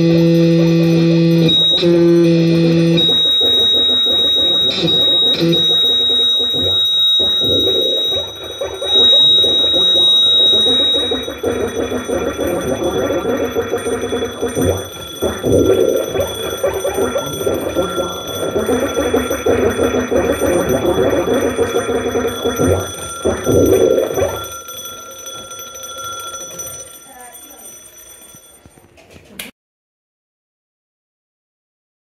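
Live experimental noise music on electronics and effects pedals: a held electronic drone with a high, piercing steady tone over it for the first ten seconds or so, then a dense, churning noise texture. It fades from about 24 seconds in and cuts off just before the end.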